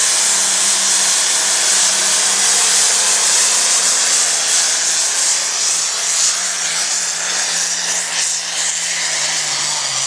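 Pulling tractor's engine running flat out as it drags a weight-transfer sled down the track: loud and steady with a strong hiss, its pitch slowly falling.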